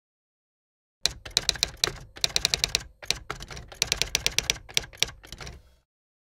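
Typewriter-style clatter of rapid key strikes, starting about a second in and going in runs broken by short pauses, as a typing sound effect.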